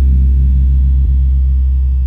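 The last note of a song: a deep synthesizer bass note held steadily, with softer tones ringing above it.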